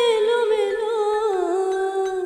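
A female vocalist holds one long sung note with vibrato over keyboard backing. The note slowly slides down in pitch, dropping a step about halfway through.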